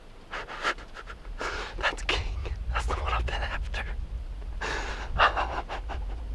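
A man breathing hard in several heavy, gasping breaths through a gloved hand held over his mouth, overcome with excitement and adrenaline just after shooting a buck.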